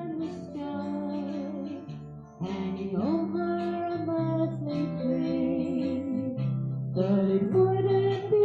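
Live acoustic band playing: strummed guitars with singers holding long notes. It drops back around two seconds in and comes in louder about half a second later.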